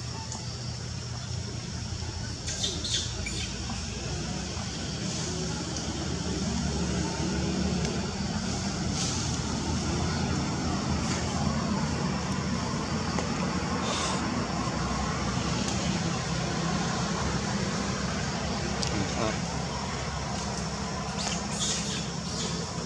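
Outdoor background of a steady low hum like distant traffic, with indistinct voices, and a few brief, sharp high-pitched sounds.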